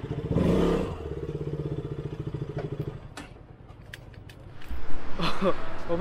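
Motorcycle engine idling with a steady pulsing note, louder for the first second, then cutting off about halfway through. A few light clicks follow before a man starts talking near the end.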